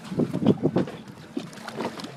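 A hooked blue shark thrashing beside a boat's hull, throwing up a loud burst of splashes in the first second, then a few smaller splashes.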